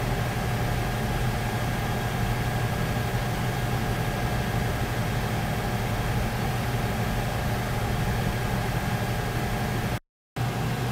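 A steady mechanical hum with a strong low drone, faint steady higher tones and a haze of hiss, unchanging throughout.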